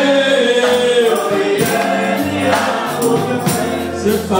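Church congregation singing a gospel worship song together, with sharp percussion hits now and then.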